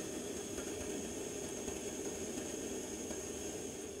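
Prepo butane camp stove burner hissing steadily, just turned up.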